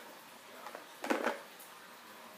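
Quiet room with a few faint clicks and a brief cluster of small clatters about a second in, as a wooden clothespin is handled and squeezed open in the fingers.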